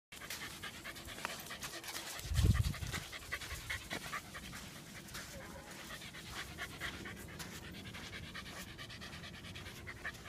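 Dogs panting in quick rhythmic breaths, with footsteps on wet sand. A brief low thump on the microphone about two and a half seconds in.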